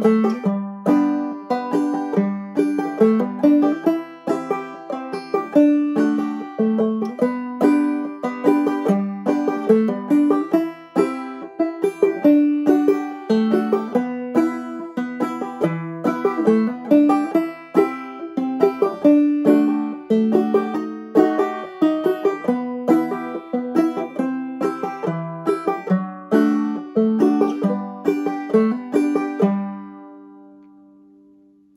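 Five-string banjo played clawhammer style: a slow, steady instrumental run through a melody in G, in A modal tuning with the fifth string dropped to G (gEADE). The last notes ring out and fade at the very end.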